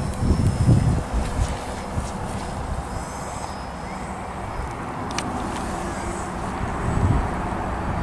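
Small radio-controlled electric airplane's motor and propeller buzzing as it climbs away after take-off, dropping in level about a second in, with wind rumbling on the microphone.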